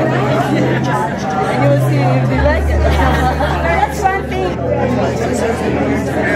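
Many people talking at once in a large hall, overlapping conversations at several tables with no single voice standing out. Soft background music with sustained low notes runs underneath.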